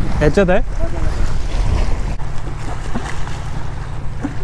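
Wind buffeting the microphone over sea water lapping at a concrete jetty. A steady low boat-engine drone joins a little after halfway.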